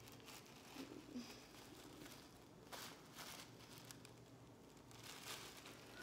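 Faint, scattered rustling and crinkling as a stretchy hairnet is pulled and worked off a human-hair bob wig by hand, over near silence.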